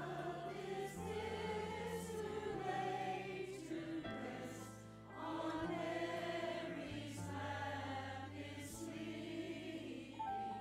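Mixed church choir of men and women singing together over sustained low accompaniment notes, with a short break between phrases about halfway through.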